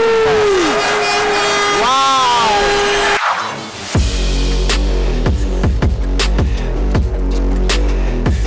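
For about three seconds a held tone sounds over crowd noise, then the sound breaks off abruptly. About four seconds in, electronic drum-and-bass music with a heavy, steady beat starts.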